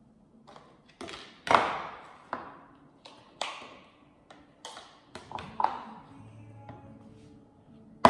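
Spoon knocking and scraping against bowls as cut strawberries are spooned from one bowl into another: a string of sharp taps with a short ring, irregularly spaced. The loudest comes about a second and a half in.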